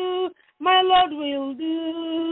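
A woman singing a gospel chorus in long held notes, one voice with no accompaniment, breaking off briefly about half a second in. The sound is narrow and thin, as heard over a telephone line.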